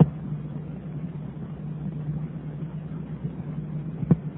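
Steady low hum with a faint even hiss: the background noise of a sermon recording.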